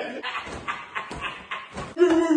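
A man laughing in short, breathy bursts, quieter than the talk around it.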